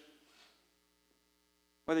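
Faint, steady electrical hum over quiet room tone; a man's voice begins near the end.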